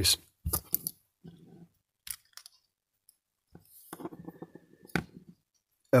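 Small plastic clicks and light rustling as a head torch's housing and circuit board are handled and taken apart by hand: a few separate clicks, with a short stretch of rustling in the second half.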